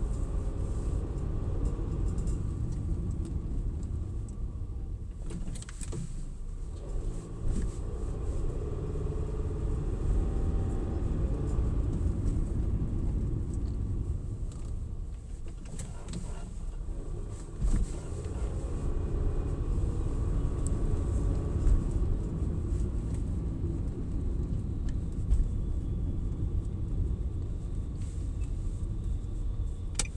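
Car cabin sound while driving: a steady low rumble of engine and road noise, with the engine note drifting up and down as the car changes speed.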